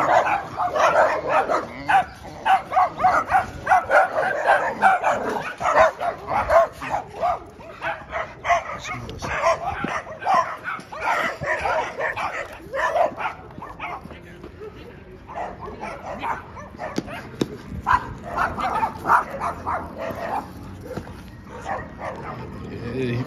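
A dog barking repeatedly in quick runs, densest through the first half, thinning out after that, with another run a few seconds before the end.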